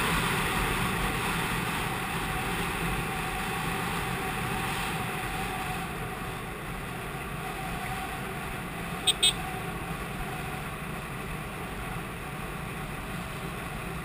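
TVS Apache RTR 180's single-cylinder engine running at a steady cruise, mixed with wind noise on the microphone. About nine seconds in, a horn gives two quick beeps.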